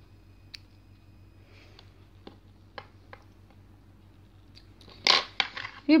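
Faint small clicks and rustles of a sewing needle and thread being worked through a needle-lace petal by hand, with a louder short rustle about five seconds in.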